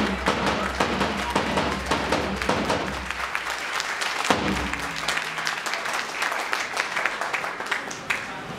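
Hand clapping: an irregular run of sharp claps that thins out somewhat about halfway through.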